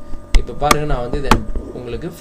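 A man speaking, with three sharp clicks of a computer mouse a little under a second apart.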